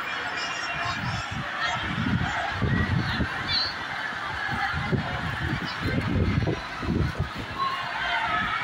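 Storm wind gusting against the microphone in irregular low rumbling bursts, strongest a couple of seconds in and again in the second half, over a background hubbub of many voices.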